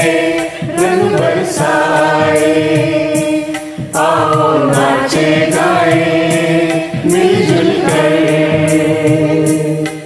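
A Hindi Holi song: several voices sing together in long held phrases over a keyboard-arranged backing.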